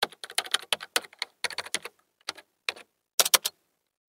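Computer keyboard typing: a quick, irregular run of key clicks, with a louder burst of a few keystrokes near the end.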